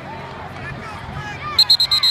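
Crowd chatter and murmur from the sideline. About one and a half seconds in, a loud run of rapid high-pitched beeps, about nine a second, cuts in over it.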